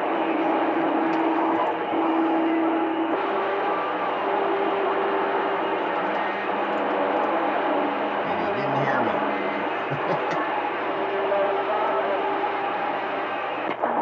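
CB radio receiver on channel 28 giving out steady hiss and static from a weak signal, with a few steady heterodyne whistles from other carriers and a brief wavering tone a little past the middle. Faint, garbled distant transmissions may be buried in the noise.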